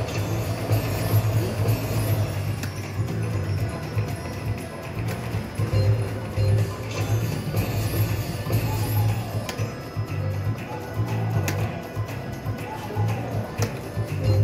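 Bell Link slot machine's electronic bonus-round music with a pulsing low beat, playing while bells land on the reels during its respin feature.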